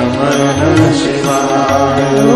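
Devotional Shiva bhajan: a singing voice glides through an ornamented melody over sustained low accompaniment notes, with light percussion strokes.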